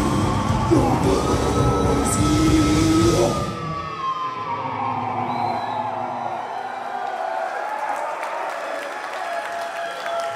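Live death metal band with distorted guitars and drums playing the last bars of a song, cutting off about three and a half seconds in. After that, a guitar note rings out with slowly bending feedback while the crowd cheers and whoops.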